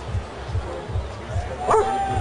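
Goa psytrance from the festival sound system: a steady, fast-pulsing bass beat under the chatter of a crowd. About 1.7 s in, a short loud yelp rises over it.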